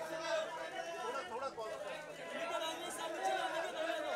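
Many people talking over one another, a dense chatter of voices with no single voice clear.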